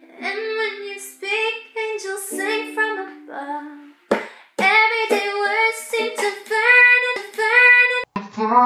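A woman singing a slow melody to a ukulele, with a short break about four seconds in before the singing comes back louder.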